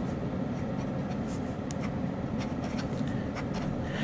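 Fine steel nib of a Hong Dian fountain pen writing letters on paper: faint, irregular strokes from a smooth, quiet nib. Underneath is a steady low hum from an air conditioner running in the room.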